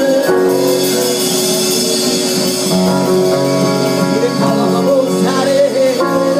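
Live gospel worship music: singers on microphones over a band, with long held instrumental chords under the voices.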